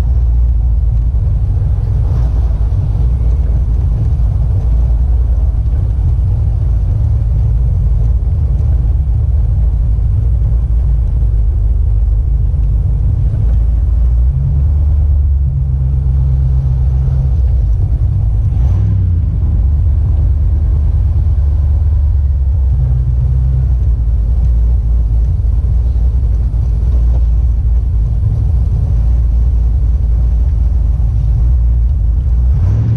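Old-body-style pickup truck's engine and exhaust, a steady deep rumble inside the cab while it is driven along at low speed.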